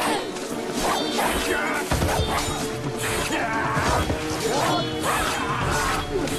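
Staged sword-fight sound: repeated sharp clashes and blows landing in quick succession, with short shouts from the fighters, over background music.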